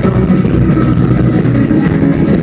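Rock band playing live through a PA system, with drums, bass, guitars and keyboards, dense and loud. There is an instrumental stretch between sung lines.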